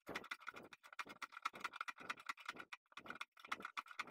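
Water pump pliers working the back nut off a toilet siphon's tail under the cistern: a quick run of faint clicks and scrapes, many a second, with a short lull about two and a half seconds in.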